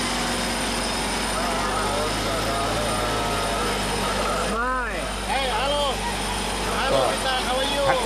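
Off-road 4x4's engine running steadily, heard from inside the cab, with people talking over it now and then.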